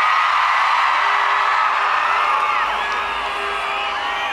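Large concert crowd screaming and cheering, many high-pitched screams overlapping, with a steady held tone running underneath from about a second in.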